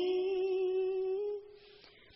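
A woman's voice chanting Khmer smot holds one long, steady note at the end of a phrase. The note fades out about a second and a half in, leaving a pause of near silence.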